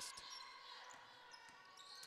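Near silence: faint arena ambience with a basketball bouncing faintly on the hardwood court.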